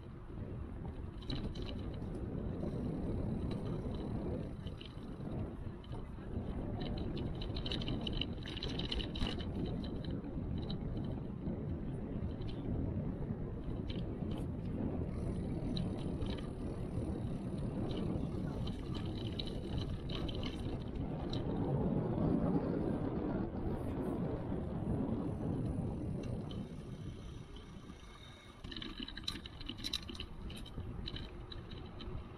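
Ride noise from a bicycle-mounted action camera: wind over the microphone and tyres rolling on a paved path, a steady low rumble that swells about two-thirds of the way through and eases near the end.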